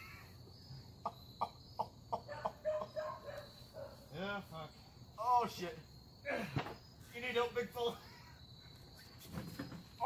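A man groaning in pain, a run of short groans and then several longer drawn-out moans that rise and fall, after taking a hard hit. Crickets chirp throughout as a steady high tone.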